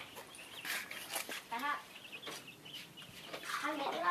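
A chicken clucking, with scattered light knocks and clicks from handling or footsteps.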